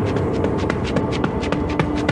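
Sound effect of running footsteps, a quick, steady patter of strides.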